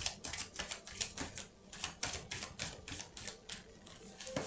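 A quick, irregular run of light clicks or taps, about five a second.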